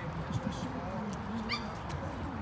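Indistinct background chatter of several people. About one and a half seconds in there is a short high rising squeak, with a few faint clicks.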